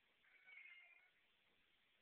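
Calico cat meowing once, a short high-pitched call about a quarter second in, lasting under a second.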